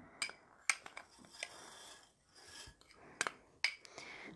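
Metal spoon scraping and tapping against small glass bowls as sugar is spooned out: a series of short sharp clinks, some in quick pairs, with soft scraping between them.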